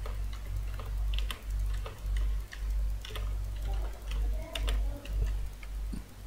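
Computer keyboard keystrokes, a scattered series of clicks as an IP address is typed, over a low electrical hum that swells and fades about once a second.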